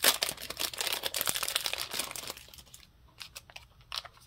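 Thin clear plastic packaging crinkling and crackling as it is handled around a pair of small thread snips. It is dense for about the first two and a half seconds, then thins to a few faint crackles and a sharp click near the end.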